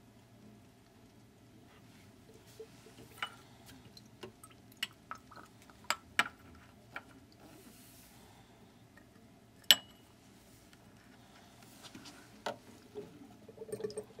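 Glass pipette clinking against a glass beaker as liquid is dispensed and drips into it: a scatter of small ticks and drips, with one sharp clink about ten seconds in.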